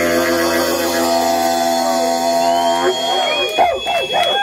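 A held electronic synth chord over a low drone, which cuts off about three seconds in. A crowd then cheers and shouts, with a long high whistle.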